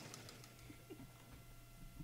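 Near silence: a pause with a faint steady electrical hum, and a faint brief low sound a little under a second in.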